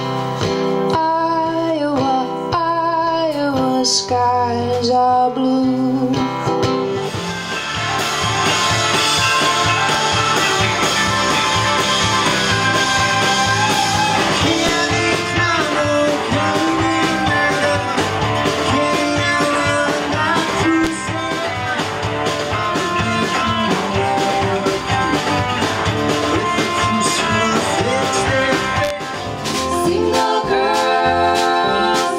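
Live music: a woman singing to an acoustic guitar, which gives way about seven seconds in to a louder, fuller band with a singer, guitar and a steady beat. It changes again near the end to voices singing in harmony.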